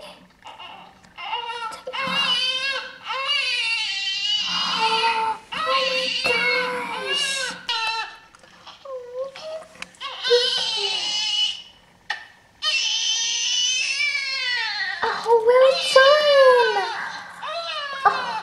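Newborn baby crying: a string of long, high-pitched wailing cries that waver up and down, with short breaths between them.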